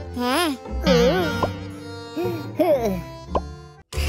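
High-pitched cartoon character voices babbling and exclaiming without words, swooping up and down in pitch, over background music. The sound drops out briefly near the end.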